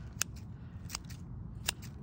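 Scissors snipping through garlic leaves: three sharp snips, evenly spaced about three-quarters of a second apart.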